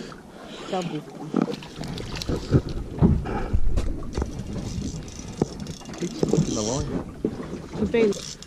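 Indistinct voices calling out and exclaiming, with a few sharp clicks and knocks among them.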